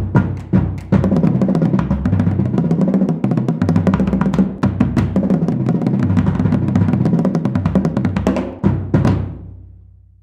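A marching bass drum line of tuned bass drums struck with mallets, playing fast split runs that pass notes from drum to drum across the different pitches. A few last accented hits about nine seconds in ring out and fade.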